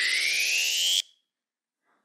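Electronic rising-sweep sound effect: a tone with a noisy wash climbing steadily in pitch, cutting off suddenly about a second in. It is a stage cue for a fast-forward jump in time between scenes.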